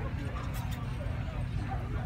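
A Scottish Terrier barking briefly about half a second in, over background chatter and a steady low rumble.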